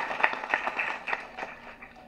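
Audience applause, a crowd clapping, that fades away over the two seconds.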